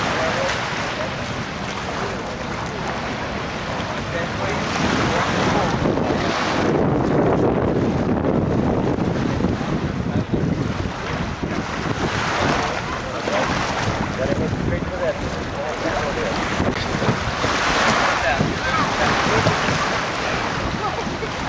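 Small waves washing in on a sandy beach, mixed with wind buffeting the microphone; the noise swells and eases every few seconds.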